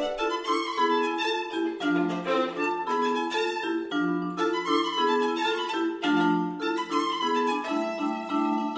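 A violin and a vibraphone playing together: a bowed violin line over vibraphone notes and chords struck with soft mallets, ringing on under a flowing, steady pulse.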